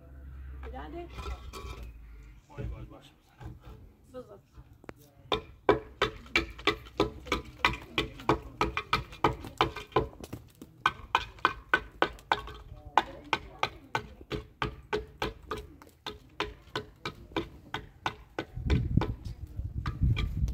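Hammer blows on a concrete building block, sharp, evenly spaced knocks at about two to three a second. They run for about ten seconds, starting some five seconds in. A low rumble follows near the end.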